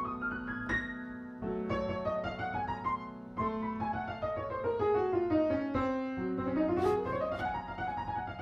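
Grand piano played in fast jazz runs that sweep down and back up the keyboard several times over a held low note. The runs are black-key runs with the fingers while the thumb glisses across the white keys, catching only F and C.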